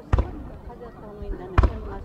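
Two dull thumps from fireworks shells, about a second and a half apart, with crowd voices murmuring between them.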